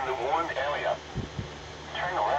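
Emergency Alert System broadcast voice reading a flash flood warning, heard through a radio's speaker; it pauses about a second in.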